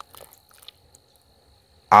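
A pause in a man's speech, close to the microphone: a few faint mouth clicks in the first second over a faint steady high tone, then his voice starts again near the end.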